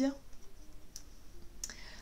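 Oracle cards being handled: a card drawn from the deck and turned up, with faint sliding of card stock and two light clicks.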